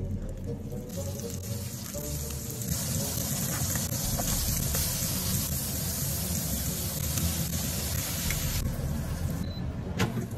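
Ground-beef burger patties sizzling as they fry in butter in a nonstick pan. The sizzle grows a second or two in, holds steady, and dies away near the end.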